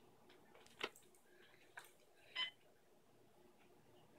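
Mostly near silence, broken by a sharp click about a second in and, a little later, a brief high-pitched whine from a dog.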